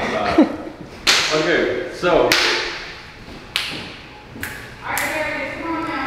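Several sharp thumps about a second apart, each ringing on in a bare, echoing room, mixed with voices.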